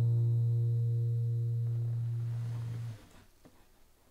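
The last chord of a nylon-string classical guitar ringing out and slowly fading, with a strong low note under it, then stopping suddenly about three seconds in. A few faint clicks follow.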